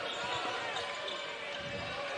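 Basketball arena game sound: steady crowd noise with faint, indistinct voices while play goes on.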